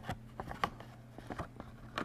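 Scattered soft clicks and taps from a paper card and a marker pen being handled close to the microphone, over a steady low hum.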